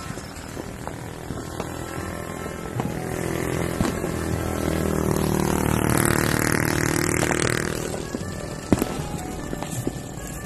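A motorcycle passes by, its engine swelling to its loudest about six to seven seconds in and then fading away, over faint background music. A few sharp cracks are heard, the loudest near the end.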